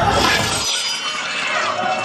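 A sudden loud crash at the very start, like something shattering, followed by a trailing high-pitched clatter as the low rumble drops away: a scare sound effect in a haunted maze.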